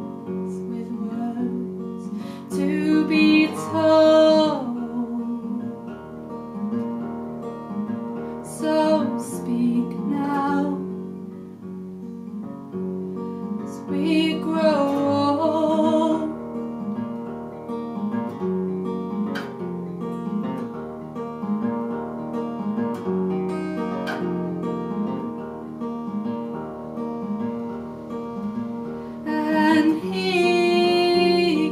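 Acoustic guitar playing a steady folk accompaniment of plucked notes, with a voice singing three short phrases in the first half.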